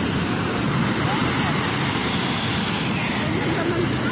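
Steady wash of ocean surf on a beach, mixed with wind on the microphone, with faint voices in the background.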